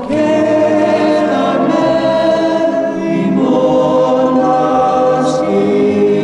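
A song's closing bars: a male lead voice and a backing choir holding long notes over musical accompaniment, the harmony changing about three seconds in.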